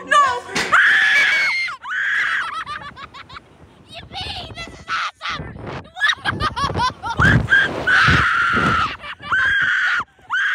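Riders screaming as a slingshot reverse-bungee ride flings them into the air. There are several long, high-pitched screams, loudest about a second in and again in the last few seconds.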